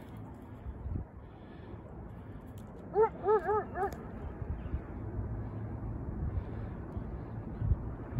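A coyote barking: four short, pitched yips in quick succession about three seconds in, each rising and falling. A steady low rumble of wind and handling noise runs underneath.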